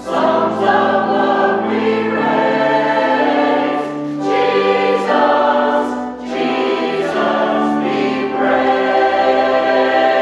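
Mixed church choir of men's and women's voices singing in sustained, held chords, phrase after phrase, with short breaks about four and six seconds in.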